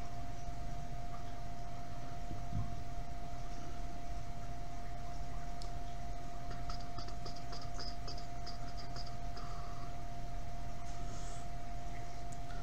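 Steady room tone: a low hum with a constant mid-pitched whine, and a few faint light ticks about halfway through.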